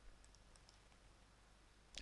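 Near silence with a few faint, short clicks in the first half second or so, from a computer mouse being clicked.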